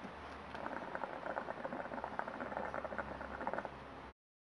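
Water in a hookah (nargile) bubbling as smoke is drawn through the hose: a rapid, continuous gurgle that starts about half a second in and stops just before the end.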